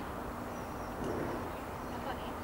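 Outdoor background noise with a steady low hum and a faint high chirp.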